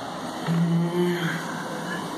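A man's voice holding a short, steady hesitation 'mm', starting about half a second in and lasting under a second, over steady room hiss.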